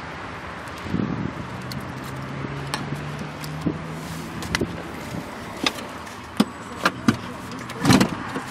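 Handling noise from someone climbing into a car's front passenger side: scattered clicks and knocks, with heavier thumps about a second in and at the end, over a faint low hum.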